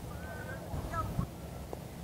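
Faint distant voices and chatter around a ballfield over low outdoor background noise, with one short sharp tap a little over a second in.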